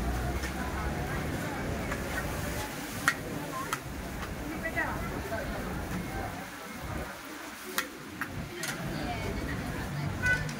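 Indistinct voices chattering at a busy hawker stall, with about four sharp clinks of a metal spatula against plates as fried noodles are dished up.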